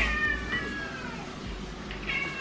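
Domestic cat meowing: one long, high meow that falls slowly in pitch, and a second meow starting near the end. The cat is begging for the tuna being prepared.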